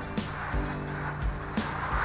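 Steady rain and wind noise on a motorhome in a thunderstorm, with a low steady hum of a few held tones underneath.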